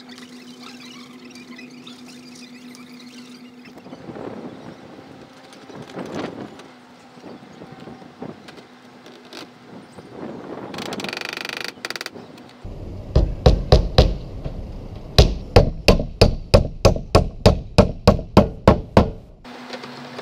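A hammer driving nails in the roof deck: a run of sharp, evenly spaced blows in the second half, a few at first and then, after a short pause, about three a second, with softer handling noise before them.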